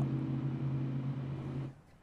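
A steady low mechanical hum over outdoor background noise, cutting off suddenly near the end and leaving a moment of near silence.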